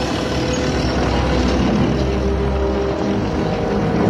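Heavy earth-moving machinery running with a deep engine rumble and dense mechanical noise as ground is dug up, under music.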